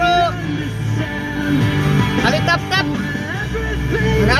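A song with guitar and a singing voice, playing on the car radio.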